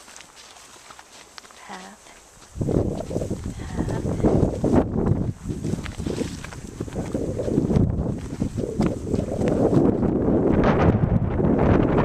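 Wind buffeting the camera microphone, setting in about two and a half seconds in, over footsteps on a dirt path.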